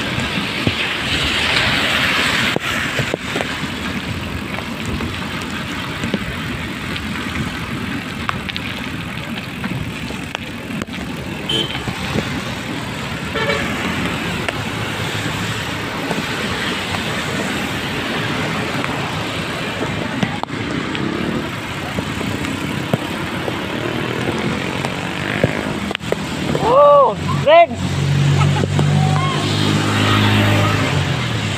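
Steady rush of rain and tyres on a waterlogged road from a moving vehicle, with two short horn toots near the end.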